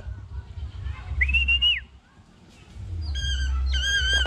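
Changeable hawk-eagle calling as it flies in to the glove: a short high whistled note about a second in, then a longer shrill piping call with several overtones from about three seconds in, as it lands.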